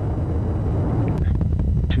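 Steady low rumble of the United Launch Alliance Vulcan rocket in ascent, its two BE-4 engines and two solid rocket boosters firing.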